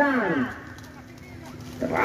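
A man's voice calling the match in Indonesian: a drawn-out word falls in pitch and fades at the start. A short pause with faint background noise follows, and the voice starts again near the end.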